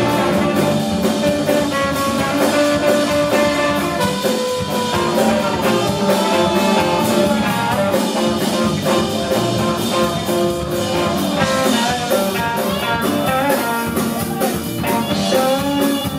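Live blues band playing an instrumental passage: tenor saxophone and trombone play horn lines over electric guitar, bass and a drum kit keeping a steady beat.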